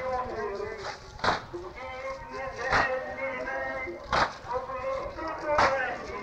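Old recording of a Shia latmiya: voices chanting a mourning lament, with the whole group's unison chest-beating strikes landing in a steady beat about every second and a half, four times.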